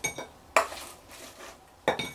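Fried battered shrimp tumbling onto a ceramic plate as a wooden spoon scrapes and knocks against a nonstick fryer pan: a few sharp clinks and knocks, the loudest about half a second in and another near the end.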